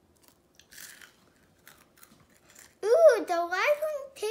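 A child biting and chewing a crisp chocolate wafer, with faint crunches in the first couple of seconds. Near the end a child's voice starts, rising and falling in pitch, and it is the loudest sound.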